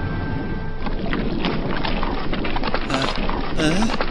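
Background music ends under a second in, then horses' hooves clatter, and a horse whinnies twice near the end.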